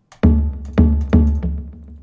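Sampled tabla from the FluffyAudio Aurora Kontakt library, pitched low to G1 in single pitch mode, playing its built-in rhythm pattern: three deep strikes less than half a second apart with lighter taps between, fading out near the end.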